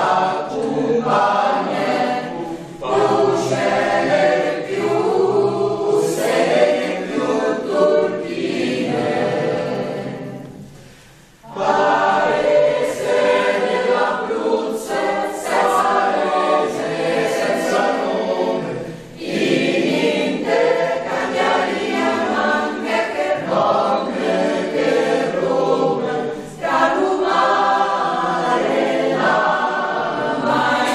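Mixed choir of men's and women's voices singing in parts under a conductor. About ten seconds in, the singing fades and breaks off for a moment before the next phrase comes back in.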